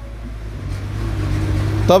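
A motor vehicle growing louder over about two seconds, under a steady low hum.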